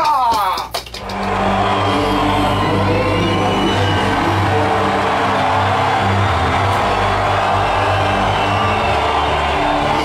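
A couple of sharp smacks in the first second, then loud music with sustained low bass notes and crowd noise underneath, as at a live concert.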